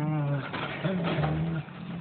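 Small dog making long, low, drawn-out moaning calls, each held at a steady pitch. The first fades about half a second in and a second one follows at once, lasting about a second.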